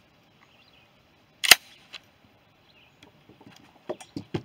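A single loud, sharp crack about one and a half seconds in, with a few faint clicks before and after it.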